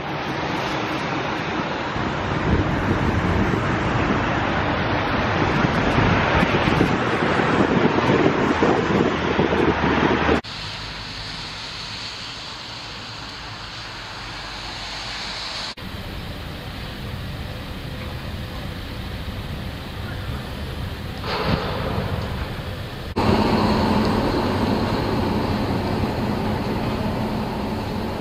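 Outdoor street ambience: wind buffeting the microphone for the first ten seconds, then a quieter background of traffic noise, broken by abrupt edits between shots.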